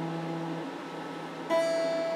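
Electric guitar with a clean tone, played one note at a time: a held note rings and dies away, then a new note is picked about one and a half seconds in and left to ring.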